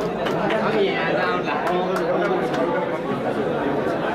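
Several people chattering at once in a hall-like room, with a few short sharp clicks in the first two seconds.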